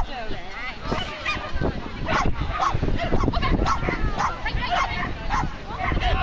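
Dogs barking repeatedly in short calls, several overlapping, with people talking in the background.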